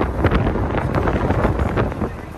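Wind buffeting the microphone through the open window of a moving car, a loud, gusty rumble with the vehicle's road noise underneath.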